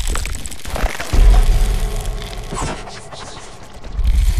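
Logo-sting sound design: a deep boom about a second in, with crackling, spark-like noise over music, fading away over the following seconds.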